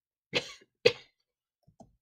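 A person coughing twice: two short, sharp coughs about half a second apart.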